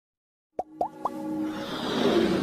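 Logo intro sound effects: three quick plops about a quarter second apart, each sweeping up in pitch and each higher than the last, followed by a swelling whoosh that builds into electronic music.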